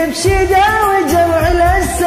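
A man singing an Iraqi song in a long, ornamented melodic line over a karaoke backing track with a pulsing bass beat.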